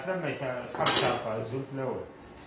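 Kitchen knife and utensils knocking against a wooden cutting board and bowl while raw chicken is prepared, with one sharp clatter about a second in. A voice sounds underneath.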